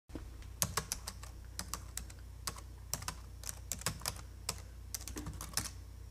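Keyboard keys typing: irregular clicks, several a second, over a faint steady low hum.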